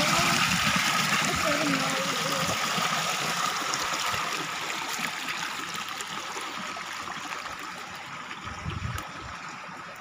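A steady rush of water pouring from a concrete outlet and splashing into a tank, growing gradually fainter.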